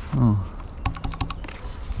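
A quick run of about six sharp clicks, close together and lasting about half a second, near the middle.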